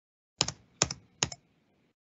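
Three quick clicks of computer keys being pressed, each a short double tap, evenly spaced a little under half a second apart.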